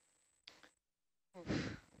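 A short breath, then a person laughing in the second half, the loudest sound here.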